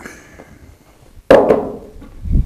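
A stack of paperback books knocked down onto a desk about a second in: one loud, sharp knock with a lighter one just after.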